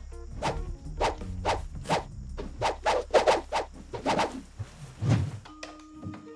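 Film score: a low sustained bass bed under a quick run of sharp percussive hits and swishes, roughly two a second, with a heavier low thud about five seconds in. Near the end the hits stop and soft held tones take over.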